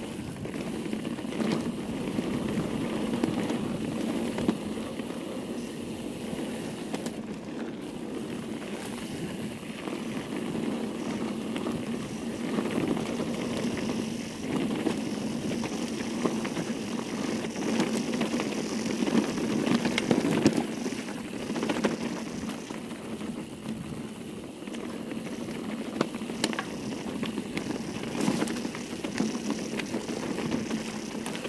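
Mountain bike riding down a dirt trail: steady rumble of tyres on dirt and loose rock, with frequent small clicks and rattles from the bike over bumps.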